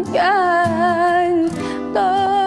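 Closing bars of a slow Turkish pop song: a female voice holds long notes with vibrato, sliding up into the first one, over a guitar accompaniment.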